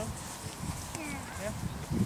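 Faint, distant voices of children talking and calling, with no clear words.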